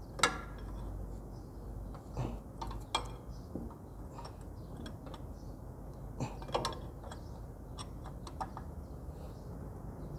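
Combination spanner clicking and clinking against the fuel bleeder fitting on a diesel injection pump as the fitting is tightened: scattered light metal clicks, a sharper one right at the start and a quick cluster about six seconds in.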